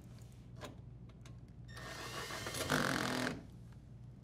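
Cordless drill driver running for about a second and a half, driving in the junction box cover screw. It is loudest just before it stops suddenly. A faint click comes about half a second in.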